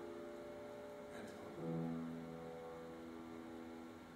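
Piano chords ringing and slowly dying away, with a fresh low chord struck about a second and a half in.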